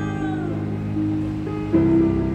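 Live band playing a slow ballad: steady held chords, a high note gliding down and fading in the first half second, and a louder new chord coming in near the end.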